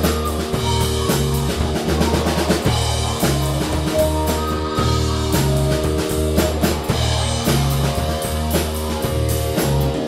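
Live rock band playing: electric guitars over a repeating bass line and a steady drum-kit beat.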